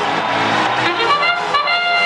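Brass trumpet call, a few notes stepping upward to a held note, over arena crowd noise: the fanfare that signals the start of a robotics match.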